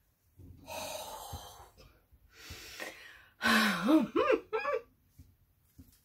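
A woman's breathing, overcome with emotion: a long breathy exhale, a shorter breath, then a loud voiced sigh that swoops up and down in pitch a little past the middle.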